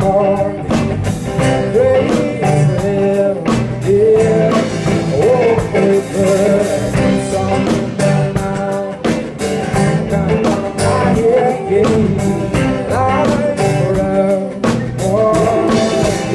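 Live band playing a worship song: a male singer's voice over guitar and an acoustic drum kit keeping a steady beat.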